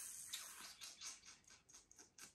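Faint dry rustling and crackling: a quick run of small crackles that thins out and fades over about two seconds.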